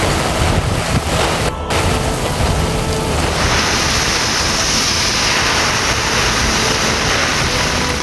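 Heavy cyclone rain pouring and strong gusty wind buffeting the microphone. The sound breaks off for a moment about a second and a half in, and from about three seconds on the downpour turns harsher and hissier.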